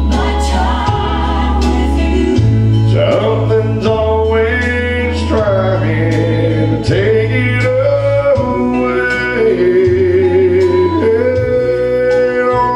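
A man singing a slow gospel worship song into a handheld microphone over instrumental accompaniment, with held bass notes that change every couple of seconds under the melody.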